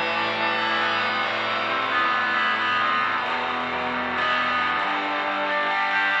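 Rock song's instrumental section led by a distorted electric guitar holding long sustained notes over the band.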